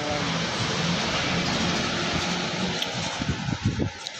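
Steady vehicle noise heard inside a van's cabin: an even, continuous hiss.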